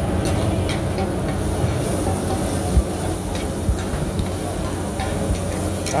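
Oyster omelette frying in a large black wok over a steady low rumble from the stove's burner, with a faint hiss. A few light clicks and one duller knock a little before halfway come from the metal spatula and the wok.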